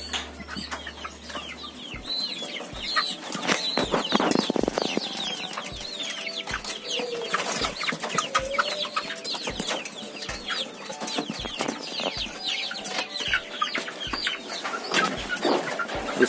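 A crowded flock of young cockerels calling, with many short high calls overlapping throughout. Occasional knocks and scuffles come from birds moving in the pen.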